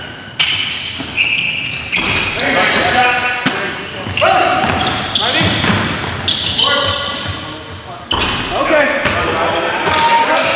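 Indoor basketball game on a hardwood gym floor: sneakers squeaking, the ball bouncing, and players calling out, all echoing in the hall.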